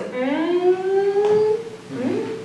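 A woman's voice holding one long, wordless note that slides upward and then stays level for about a second and a half before fading.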